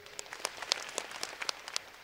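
Studio audience applauding, with individual hand claps standing out.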